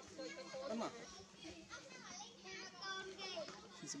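Several voices talking and calling over one another, some of them high like children's; a man says "Mama" about a second in.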